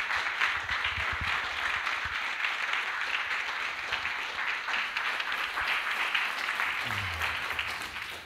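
Congregation applauding steadily at the close of a sermon, a dense patter of many hands clapping.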